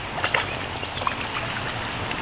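Creek water running steadily over a riffle, with a few faint ticks.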